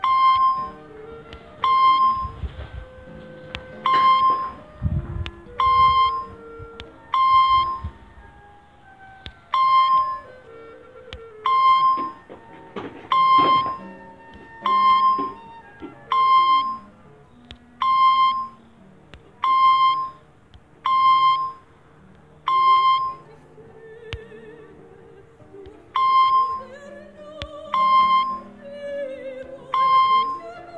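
A short, bright electronic beep at one fixed pitch repeats about once a second, with a few longer pauses. It is the spelling quiz app's answer sound as each eu/äu answer is tapped and marked correct. Quieter background music plays underneath.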